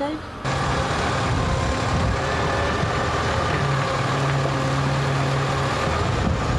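Excavator's diesel engine running steadily on a street repair site, its low pitch stepping up a little about halfway through.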